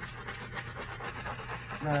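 Faint scratching and rubbing as a clear plastic piece is worked by hand across the wet acrylic paint on the canvas, over a low steady hum.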